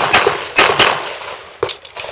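Handgun shots in quick succession: about five in two seconds, a fast pair near the start, another pair just past half a second, and a single shot near the end.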